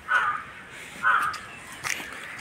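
A crow cawing twice, about a second apart, with a brief click near the end.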